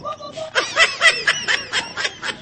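High-pitched laughter in quick repeated bursts, starting about half a second in.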